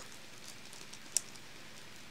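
Quiet room tone with faint hiss and one short, sharp click a little over a second in.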